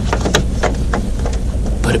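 A new air filter's plastic frame being handled and fitted into an RV generator's air-cleaner housing: a string of short clicks and rustles over a steady low rumble.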